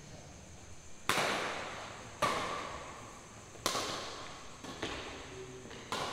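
Badminton rackets hitting a shuttlecock back and forth in a rally, sharp cracks about once a second, each followed by a long echo in the hall; the three loudest come a second, two seconds and about three and a half seconds in, with lighter hits near the end.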